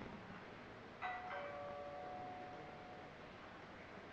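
A faint two-note chime about a second in, a higher note followed by a lower one in a ding-dong, fading away over about two seconds.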